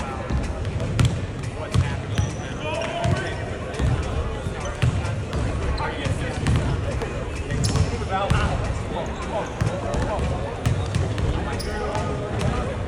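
Basketballs bouncing on a hardwood gym floor, with repeated irregular thumps throughout during shooting practice, under indistinct voices.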